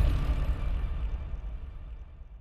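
The low, rumbling tail of an electronic intro music sting, fading steadily away.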